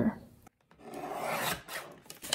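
Fiskars paper trimmer's blade arm shearing through a sheet of vellum: a rasping cut about a second long, starting just under a second in.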